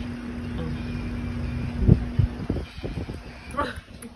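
Handling noise from a phone being picked up and carried: a steady low hum, then two heavy thumps on the microphone about two seconds in, followed by rustling and light knocks.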